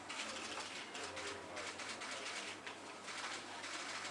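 Sheets of paper rustling and shuffling in irregular short bursts as documents are handled and signed.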